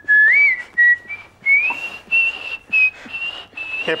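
A person whistling: a single whistled line that climbs in pitch in a few slides, then holds a higher note for the second half and stops just before the end.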